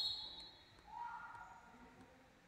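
Faint, high-pitched cries of pain from an injured futsal player lying on the court, one drawn-out cry rising about a second in.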